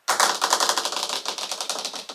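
Drumroll: a fast, even roll of sharp snare-like strokes, more than ten a second, starting suddenly.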